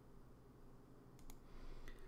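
Near silence with room tone and a few faint clicks in the second half.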